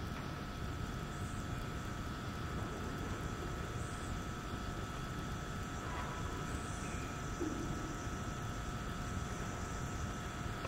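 Steady background noise of the recording: a low rumble with hiss and a couple of faint steady hum tones, with no distinct events.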